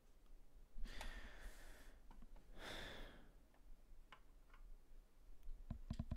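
A person breathing out twice, a sigh, at low level. A few faint clicks of plastic model parts being handled follow near the end.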